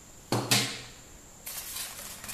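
Two quick knocks as a plastic airsoft speed loader is set down on the table, then a rustling scrape of hands working an item out of the packaging's foam tray.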